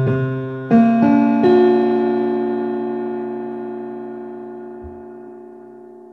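Keyboard tuned to 31-tone equal temperament playing a septimal chord stacked 7/4, 5/4, 5/4 (1, 7, 35, 175), an augmented triad over the septimal seventh. Notes enter one after another over the first second and a half, then the chord rings and slowly fades.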